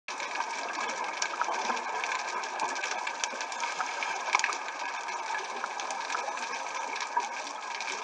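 Underwater ambience picked up through a dive camera's housing: a steady hiss with many scattered sharp clicks and crackles.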